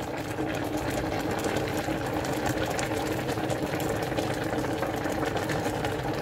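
Steady mechanical hum with a fine, rapid rattle, as of a small motor or engine running without pause.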